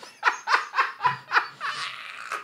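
Men laughing hard, in quick repeated bursts of about four a second.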